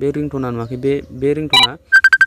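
Phone ringtone preview: a short electronic chime about one and a half seconds in, then a rapid run of sharp, high electronic beeps starting right at the end, as the ringtone picker opens on the Messenger tone.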